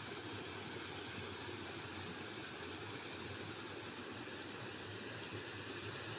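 Water spilling over a low concrete weir into a shallow river: a steady rushing noise.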